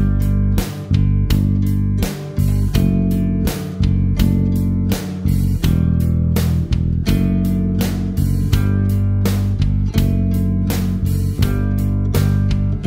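Guitar playing a slow exercise of the notes G and A on the G string, open string and second fret, moving from long held notes to shorter ones in a steady beat, over a low accompaniment.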